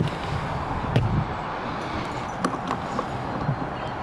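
Footsteps on a sailboat's fibreglass deck: a few irregular thudding knocks, the heaviest at the start and about a second in, then lighter clicks near the end.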